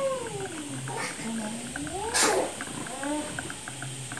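A cat meowing several times, each call drawn out and rising then falling in pitch, with a brief noisy burst about two seconds in. Under it runs a faint, regular gurgling of ink draining from an upturned bottle into an Epson L3150 EcoTank's ink tank.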